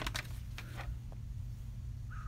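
A few faint clicks of LEGO pieces being handled during building in the first second, over a low steady hum.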